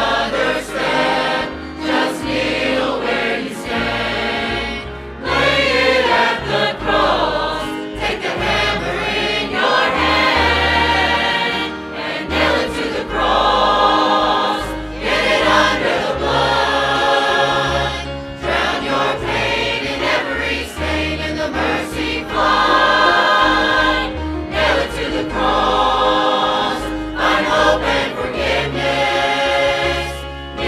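Large mixed choir of men and women singing a gospel song in harmony, with instrumental accompaniment carrying a steady bass line under the sustained sung notes.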